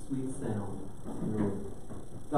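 Speech only: a man's voice talking quietly.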